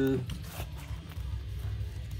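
Vinyl records being flipped through by hand: faint clicks and rustle of the sleeves over a low background of music.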